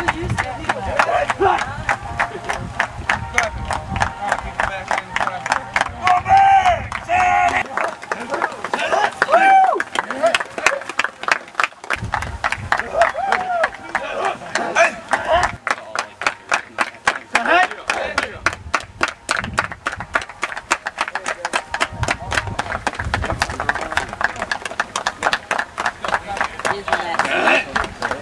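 Football players shouting and calling out over a rapid, steady run of sharp claps, about three to four a second, through the whole stretch.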